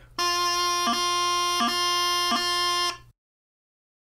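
Highland bagpipe practice chanter holding a steady note, broken three times by quick tapping grace notes that flick down in pitch and separate the repeated note. These are the single-finger E taps that drop briefly to low A. The playing stops at about three seconds, followed by dead silence.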